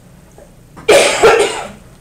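A person coughing loudly, two quick coughs run together starting a little before one second in.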